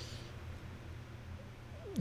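Faint steady low hum of room tone. A brief falling vocal sound comes just before the end as the speaker starts to talk.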